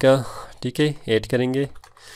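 A few keystrokes on a computer keyboard as a word is typed, mixed with a man's voice drawn out in short pitched stretches.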